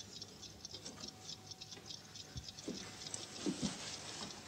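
Faint, rapid, irregular ticking and clicking, with a few soft low thumps in the second half.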